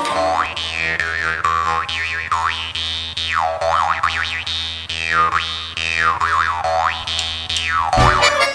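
Jaw harp music: a steady low drone plucked in a quick, even pulse, with an overtone melody that sweeps up and down in repeated wah-like glides.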